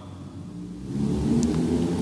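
Low rumble of a motor vehicle engine, growing louder about a second in.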